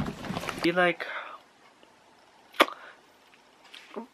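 A man's voice trails off, then a single sharp knock about two and a half seconds in as a hand hits the hard plastic shell of a suitcase, with a faint click just before the end.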